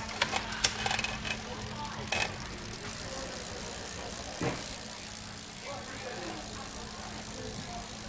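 Shimano Tiagra drivetrain of a road bike turned over by hand on a stand: the chain runs over the chainrings, with several clicks from gear shifting in the first couple of seconds and one more click about four and a half seconds in.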